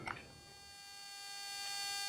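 Faint, steady electrical hum with a thin, high whine. It starts from near silence and slowly grows louder.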